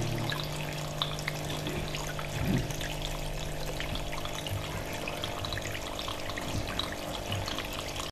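Water trickling steadily in a small nativity-scene water feature, with faint drips and a steady low hum underneath. Background music ends just after the start.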